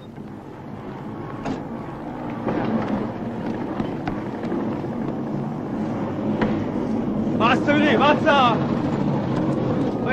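A motor vehicle engine running steadily, swelling over the first few seconds and then holding, with a man's voice calling out briefly near the end.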